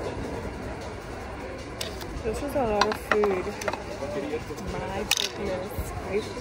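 Indistinct speech over a steady low background rumble, with a few sharp clicks.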